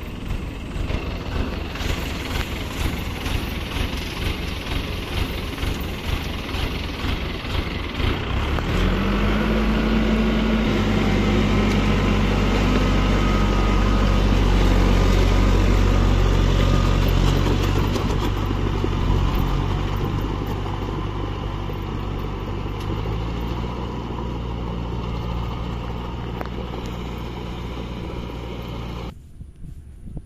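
Rice combine harvester running: its engine and threshing machinery make a dense, steady mechanical noise. About nine seconds in, a louder, steady low engine hum joins it and eases off over the last ten seconds. The sound drops away just before the end.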